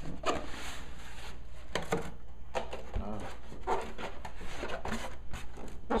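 White foam packing insert being worked loose and pulled out of a cardboard box: irregular scraping, squeaking and rustling as foam rubs on cardboard, with a dull knock about three seconds in.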